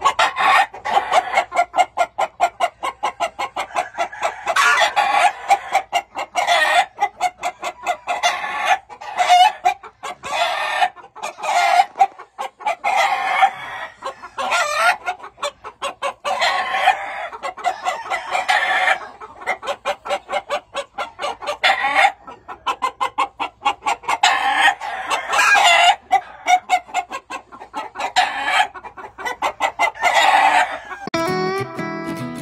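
Gamefowl chickens clucking in quick, repeated notes, with roosters crowing at intervals.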